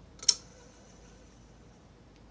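A single sharp metallic click about a third of a second in, with a faint ringing that fades over the next second and a half, over low room noise with no motor hum.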